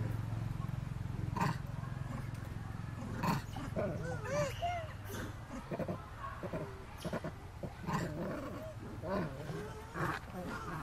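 Macaques calling: a run of short, rising-and-falling coos and squeals beginning about a third of the way in, with a few sharp clicks before and between them.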